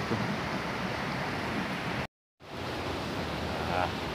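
Steady rush of a swift river and its small cascades over rocks, broken by a brief moment of total silence just after two seconds in.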